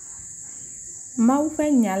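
A steady high-pitched whine runs under the audio. A voice begins speaking just over a second in.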